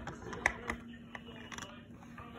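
Faint handling noise: a few light clicks and taps, about four spread across two seconds, over a faint steady hum.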